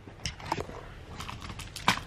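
Handling noise: several light clicks and taps, the loudest near the end.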